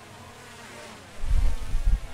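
Faint buzzing background noise, then about a second in a loud, deep rumble on the microphone.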